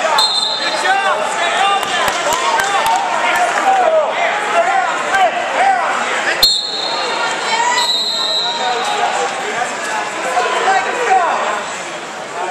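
Wrestling shoes squeaking repeatedly on the mat as the wrestlers shuffle and hand-fight, over the murmur of a gym crowd. Three short high whistle blasts sound, near the start, about halfway, and a second or so later, with a sharp click just before the second.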